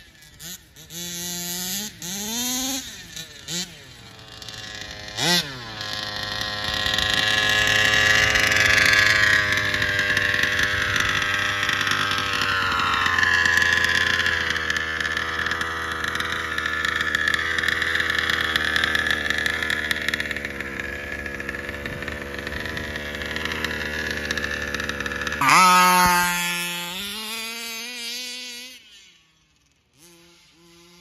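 HPI Baja 5B RC buggy's two-stroke petrol engine, geared 19/55, revving in short throttle blips, then held at high revs for about twenty seconds as the buggy runs flat out. Near the end the revs drop sharply, blip a few more times and die away to quiet.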